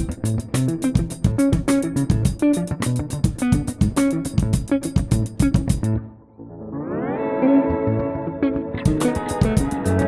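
Clean electric guitar (Ibanez) playing a rapid, steady arpeggio pattern of plucked notes with thumb and fingers. About six seconds in the picking stops briefly, a chord slides up the neck and rings out, and the fast arpeggio picks up again near the end.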